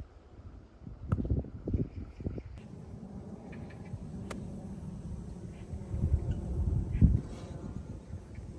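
Wind buffeting the microphone in uneven gusts over a low steady hum, with a single sharp click about four seconds in.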